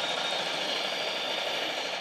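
Sengoku Pachislot Hana no Keiji slot machine playing a steady rushing sound effect with its flash-and-flame screen animation while the reels spin. The sound swells just before the start and eases off near the end.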